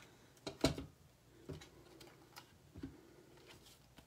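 Cardstock and a paper trimmer being handled and set down on a craft table: a few scattered light knocks and rustles, the sharpest about half a second in.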